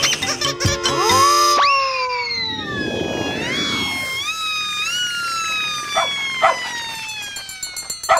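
Cartoon fire-engine siren wailing, its pitch sweeping up sharply and then falling slowly with a few small step rises, with a whoosh about three seconds in as the truck goes by. Two short dog barks come near the end.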